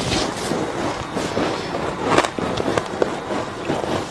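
Freezer frost being crunched and chewed in the mouth, picked up close by a clip-on microphone: a dense run of crackly crunches, with one sharper, louder crunch a little after two seconds in.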